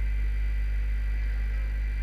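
Steady low electrical hum with a faint high tone above it, unchanging throughout: background noise of the recording setup.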